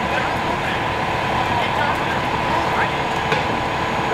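Fire apparatus engines running steadily, with indistinct voices over the noise.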